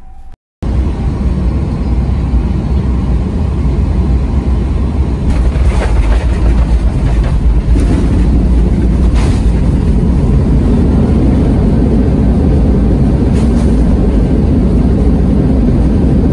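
Jet airliner cabin noise during the takeoff roll: engines and wheels on the runway make a loud, steady rumble that starts suddenly about half a second in and grows fuller about halfway through, with a few faint knocks.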